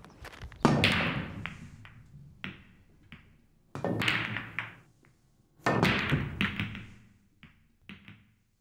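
Pool shots on a billiard table: a cue striking the balls three times, about a second in, near four seconds and near six seconds, each a sharp knock that dies away over about a second, with lighter clicks in between.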